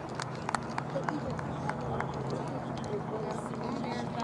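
Faint distant voices of youth players and adults chattering, with scattered short clicks and taps throughout.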